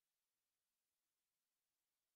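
Near silence: the audio track is essentially empty, with only a faint, even hiss.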